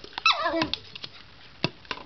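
Poodle giving an excited whining yelp that slides down in pitch, about a quarter second in, during play with a Jolly Ball. Two short sharp knocks follow near the end.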